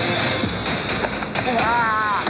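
Trailer sound mix: a loud, steady hiss over music, with scattered thuds and knocks. Near the end a brief high voice rises and then falls in pitch.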